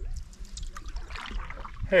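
A canoe paddle stroking through lake water, with water trickling and dripping off the blade and a few small clicks, over a low steady rumble.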